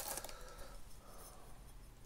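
Faint handling noise as a metal fork spacer tube is drawn out of its cardboard box: a few light ticks and rustles in the first half second, then only quiet room tone.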